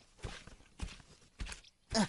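Footsteps: four evenly spaced steps, about one every 0.6 seconds, the last one, near the end, the loudest.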